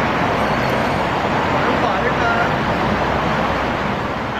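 Steady, loud traffic noise from road vehicles, with faint voices under it.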